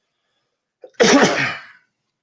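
A person sneezing once, loudly, about a second in, with a brief catch of breath just before it.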